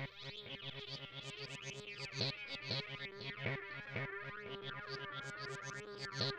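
Acid-like electronic techno from a Korg Electribe 2 Sampler and a Novation Bass Station II synthesizer: a repeating sequence of short, swept synth notes over a steady held tone.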